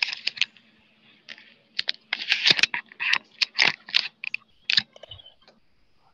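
A rapid, irregular run of loud clicks and scratchy strokes picked up close to a microphone, densest in the middle and dying away about a second before the end, over a faint steady electrical hum.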